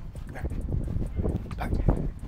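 Rapid footfalls of two people side-shuffling on artificial turf, one in trainers and one barefoot: a quick, uneven run of soft thuds.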